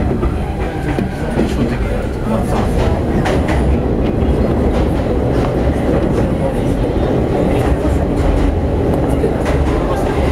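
JR 115-series electric train running at speed, heard from inside the carriage: a steady low rumble from the wheels and running gear, with scattered clicks and clacks of the wheels over the rail.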